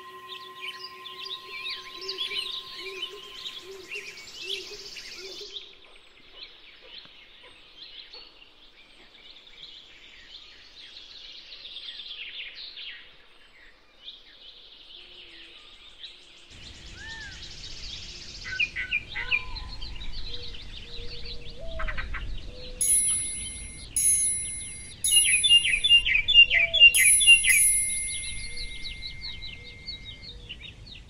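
Many songbirds chirping and trilling together. There are steady held tones in the first few seconds. A low rustling noise joins about halfway, and bright ringing chime-like notes join near the end.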